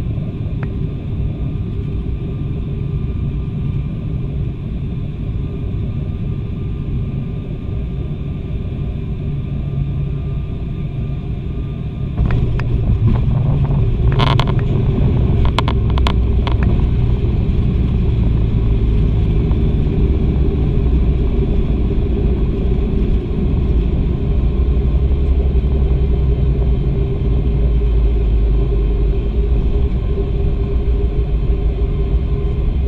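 Cabin noise of a twin-turboprop airliner: steady engine and propeller drone on final approach. About twelve seconds in it turns suddenly louder and deeper as the plane touches down and rolls out on the runway, with a few sharp knocks a couple of seconds later.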